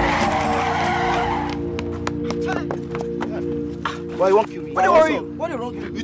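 Car tyres skidding under hard braking: a screeching rush that stops about a second and a half in. Raised male voices follow over a steady music bed.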